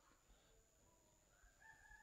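Near silence, with a faint, drawn-out bird call that starts about one and a half seconds in and lasts under a second.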